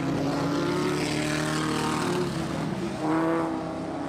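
Engines of vintage open-wheel speedcars and sprintcars racing on a dirt oval, several running at once, with one swelling louder and rising in pitch about three seconds in.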